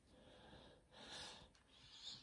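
Near silence, with three faint, soft breaths about a second apart.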